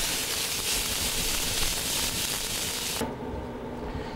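Frying pan of chopped garlic, tomatoes and hot pepper in olive oil sizzling while flaming over a gas burner: a steady loud hiss that cuts off suddenly about three seconds in, leaving quiet kitchen room tone.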